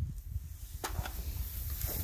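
Rustling in the grass as a dead coyote is picked up by its leg, with two short brushing sounds, about one and two seconds in, over a low rumble.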